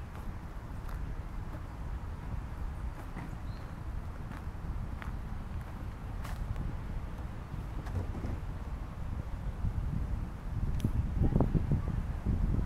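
Wind rumbling on the microphone, with scattered faint ticks and clicks; the rumble grows louder near the end.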